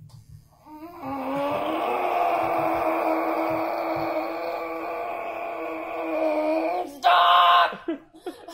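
A woman's long, drawn-out wail of pain, held on one steady pitch for about six seconds while a tattoo needle works on her side. It ends with a short, louder, higher cry near the end.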